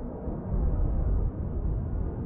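A deep, low rumble from a dark intro soundtrack, growing louder about half a second in.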